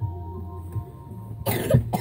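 A person coughs: a harsh burst about one and a half seconds in, with a second short burst at its end, over a steady low hum.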